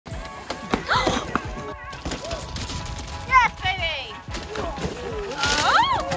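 Spectators shouting and whooping in sharp rising-and-falling cries, about a second in, again near three and a half seconds and loudest near the end, as downhill mountain bikers ride and crash. A steady music bed runs underneath, with a few thuds.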